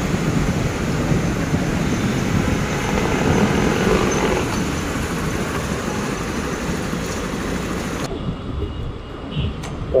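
Hero XPulse 200's single-cylinder engine running as the motorcycle is ridden down a workshop ramp, under a steady roar of street traffic. About eight seconds in the noise drops suddenly, leaving a quieter background with a few clicks.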